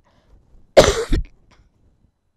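A woman coughs once, a single short, loud cough about a second in.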